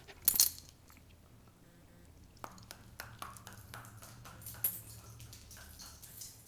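A dog moving about on a hardwood floor: a loud, sudden brushing knock close to the microphone just after the start, then scattered light clicks and taps, one sharper near the five-second mark, like claws on the boards as the dog walks off.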